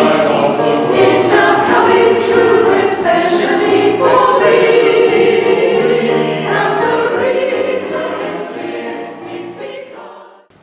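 A choir singing together, several voice parts at once; the singing fades and dies away over the last few seconds.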